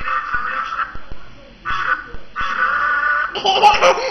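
A child's hand-turned toy music box playing its tune in three short stretches, stopping and starting as it is turned, with small clicks in between. Near the end a toddler's laughing voice comes in.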